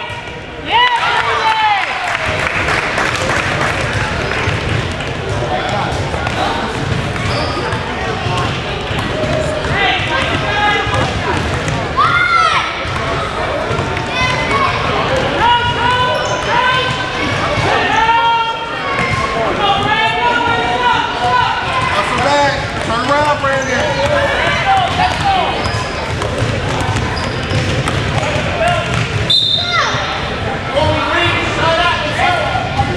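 A basketball being dribbled and bouncing on a hardwood gym floor during a youth game, with players running. Voices shout and chatter throughout, ringing in the large gym.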